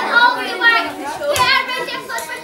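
Many children's voices talking and calling out at once, high-pitched and overlapping into an unintelligible group chatter.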